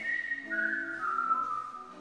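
Whistling: a short tune stepping down in pitch over about a second and a half, with soft music underneath.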